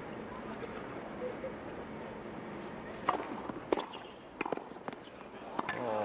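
Tennis rally on a hard court over a low crowd murmur: about five sharp ball strikes and bounces, racket on ball, come in quick succession from about three seconds in. The crowd noise swells right at the end as the point finishes.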